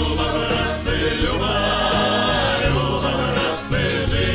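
Mixed choir of men's and women's voices singing a Russian folk song together in harmony, with sustained notes.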